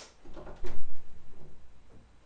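A door latch clicks, then a door is pushed open with a series of low thumps and rattles, the loudest about three-quarters of a second in.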